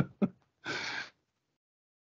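The tail end of a man's laugh, then one audible breath in, about half a second long, taken close to the microphone.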